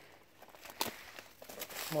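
Faint scattered crackles and rustling from footsteps and brushing through dry grass on loose rock, with a couple of sharper ticks.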